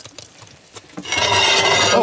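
A cast-iron pan being dragged out across the adobe oven's floor: a few light knocks, then a loud rasping scrape of metal on the oven floor for about the last second.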